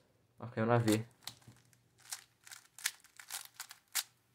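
A plastic 3x3 speedcube being turned by hand: a run of quick, irregular clicks and clacks as its layers are turned, starting about a second in.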